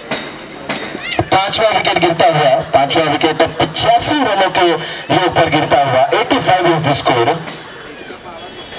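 A man's voice talking loudly and without pause, stopping about seven seconds in.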